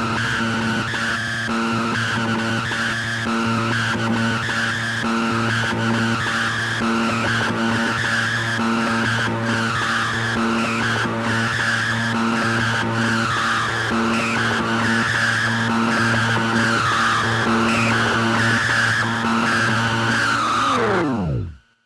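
Techno played loud over a club sound system, recorded on a phone among the crowd: a steady beat under held low synth tones and a wavering high synth line.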